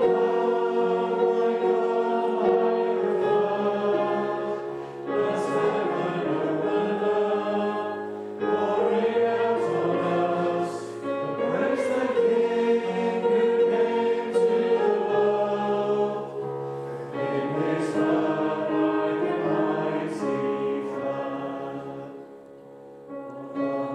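A congregation singing a worship song together over sustained instrumental backing. The lines are sung in phrases, with short breaks between them.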